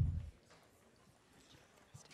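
A single dull, low thump at the very start, then quiet hall room tone with a few faint soft knocks.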